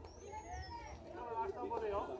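People talking and calling out, several voices overlapping, getting louder near the end.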